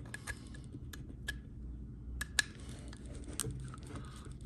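Light, scattered clicks and taps of a precision screwdriver working small screws out of a plastic extruder housing, with small parts handled in between.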